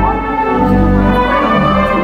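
Theatre organ playing held chords over low bass notes, with brass-like reed voices and a wavering vibrato on some upper notes.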